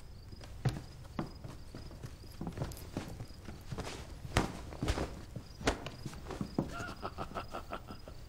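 Footsteps of several people walking across a wooden floor: irregular knocks and scuffs, a few sharper steps in the middle. Near the end a man's short chuckle.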